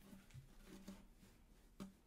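Near silence: room tone, with a few faint rustles and one soft click near the end.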